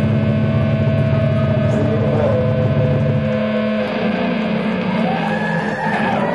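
Live band playing a loud drone piece on electric guitar and bass: a dense layer of sustained notes, the lowest drone cutting out about three and a half seconds in while the higher notes carry on.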